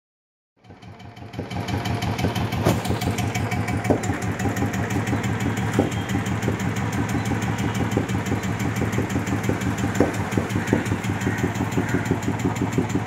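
Royal Enfield single-cylinder motorcycle engine idling steadily with an even pulse. It fades in about a second in, after a moment of near silence, with a few sharper clicks over the running engine.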